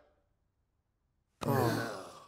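After about a second of silence, a cartoon character lets out a long, breathy voiced sigh that falls in pitch and fades away.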